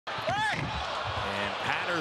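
Arena sound of a live NBA game broadcast: crowd noise and players on the hardwood court, with a short high squeak about half a second in. The TV commentator starts talking near the end.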